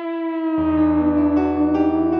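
A band's song opening: one long held note, joined about half a second in by a low bass and chords as the rest of the band comes in.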